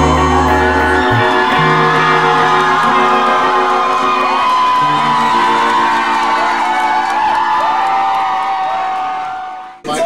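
Live band with electric guitar playing and holding out notes, with whoops and cheering from the crowd. The bass drops out about a second in, and the sound fades away near the end before cutting off.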